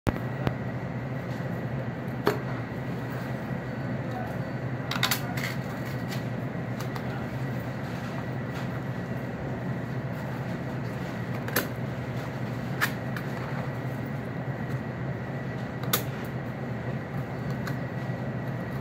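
A butcher's knife cutting meat away from a back bone with ribs, with scattered sharp clicks and knocks as the blade meets bone and the table, over a steady low hum.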